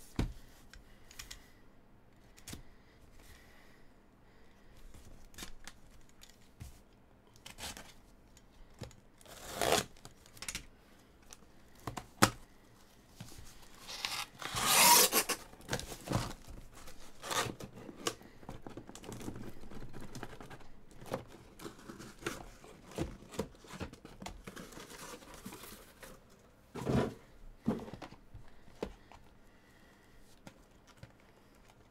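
A cardboard shipping case being slit open with a utility knife and its flaps pulled apart, with a loud ripping of cardboard and tape about halfway through. Scattered scrapes and clicks, and a couple of knocks near the end as shrink-wrapped boxes are handled and set down.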